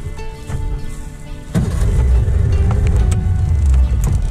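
Small boat's outboard motor running, with a heavy low rumble that grows louder about a second and a half in.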